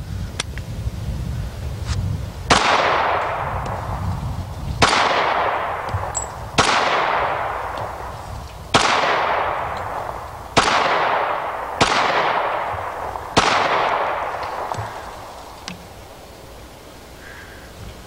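IAI Model 5000, a 1911-style commander-sized .45 ACP pistol, firing seven single shots spaced one to two seconds apart, each followed by a long fading echo.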